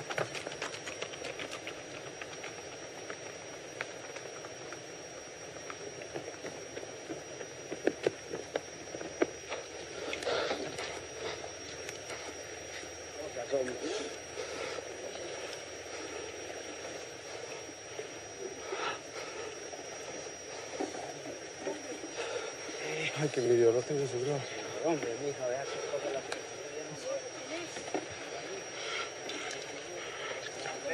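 Scuffling with scattered knocks and wordless human voices, the voices loudest about three-quarters of the way through.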